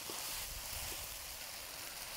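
Stir-fry sizzling in a wok on high heat while being stirred with a spatula: a steady hiss.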